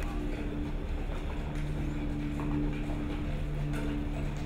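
A motor running with a steady low hum over a low rumble.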